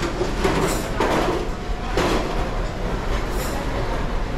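Background din of a crowded buffet dining room: a steady low rumble with indistinct voices and a few clinks of dishes and cutlery.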